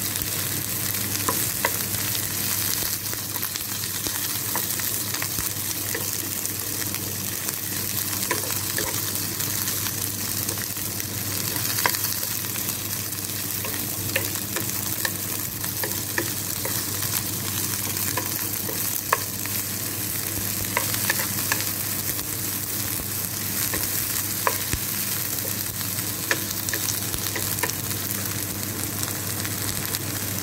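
Chopped avarakkai (flat beans) sizzling steadily as they sauté in oil in a pan, stirred with a wooden spatula that taps and scrapes against the pan every so often.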